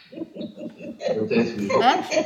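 Soft laughter: a quick run of short voiced pulses, about six a second, in the first second, followed by a woman speaking.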